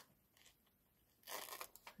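Near silence, then a short, soft rustle of paper a little over a second in, as a vellum tag and the paper ornament are handled.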